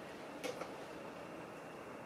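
A small ratchet wrench going onto the throttle cam's nut, giving a single faint metallic click about half a second in; otherwise quiet.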